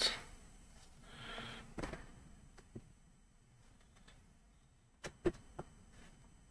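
Quiet room with a few faint, short clicks: two about two to three seconds in, then three close together about five seconds in.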